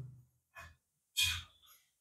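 A man's breath, picked up close on a lapel microphone: a faint puff about half a second in, then one short, louder exhale a little after a second in.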